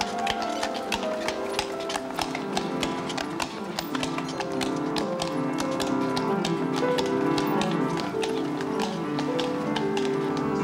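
Horse's hooves clip-clopping on cobblestones, a steady run of sharp strikes several times a second, under background music with held notes.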